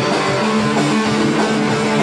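Amateur heavy metal band playing live, the electric guitars to the fore, with a note held from about half a second in until near the end.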